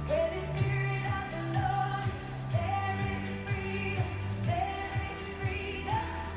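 Upbeat song with a sung lead melody over a steady bass line and a regular beat.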